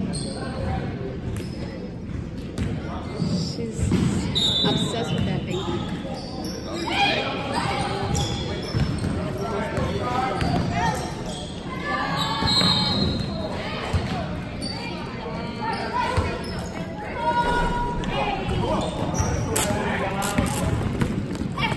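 Basketball being dribbled on a hardwood gym floor during a game, with spectators' voices and shouts carrying through the echoing gym.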